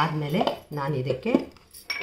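Mostly a voice speaking. About 1.8 s in there is a single sharp metallic clink, with a short ringing after it, from a steel kitchen utensil or bowl.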